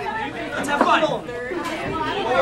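Indistinct voices of several people chattering, with no clear words.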